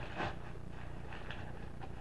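Faint crinkling and rustling of crumpled newspaper being pushed down into a PVC pipe, over a low steady room hum.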